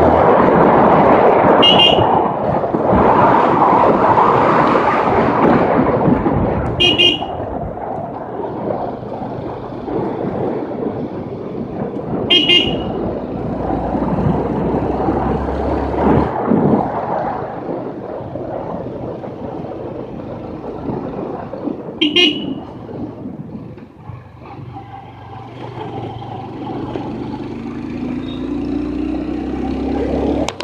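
A vehicle horn beeps briefly four times, several seconds apart, over constant wind and road rush from riding. The rush is loudest in the first few seconds.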